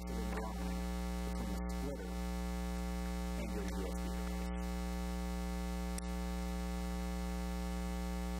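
Steady electrical mains hum with a stack of overtones, unchanging in level, with a few faint brief sounds over it in the first half.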